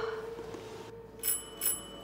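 Doorbell ringing twice in quick succession: two short, high, bright rings less than half a second apart.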